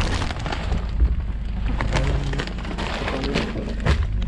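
Plastic snack wrappers crinkling and rustling inside a cloth tote bag as it is handled, over a steady low rumble from a vehicle engine.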